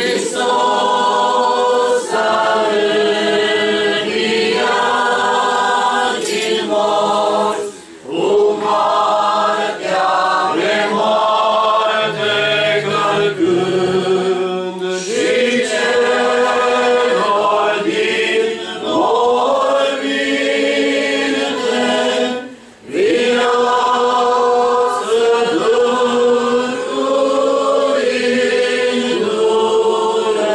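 A choir singing Orthodox Easter chant unaccompanied, several voices holding long notes together, with short breaks about 8 seconds in and again near 23 seconds.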